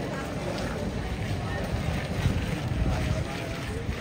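Background chatter of a crowd of tourists' voices, no single voice standing out, over a steady low rumble.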